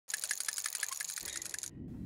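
Rapid, even mechanical clicking, about a dozen clicks a second, that cuts off suddenly near the end. A low hum comes in under it during the second half.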